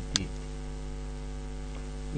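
Steady electrical mains hum, a low buzz with a stack of even overtones, carried on the recording during a pause in speech. There is a brief click near the start.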